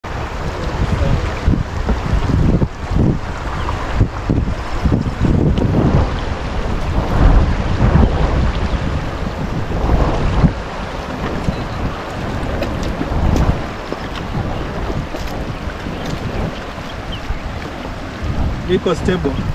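Wind buffeting the microphone in irregular gusts, over the rush of flowing floodwater.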